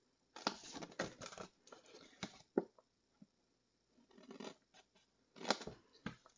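Small paper snips cutting through folded designer paper: a quick run of snips in the first second and a half, then scattered clicks and paper rustles, with a louder one near the end.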